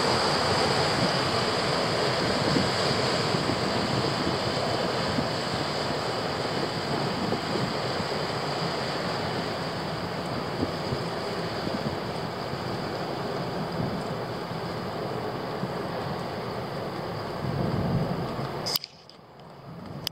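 Steady rushing noise of wind on the microphone over moving river water, slowly fading, then cutting off sharply near the end.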